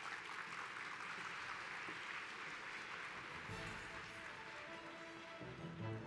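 Audience applauding. About halfway through the applause fades and music comes in under it.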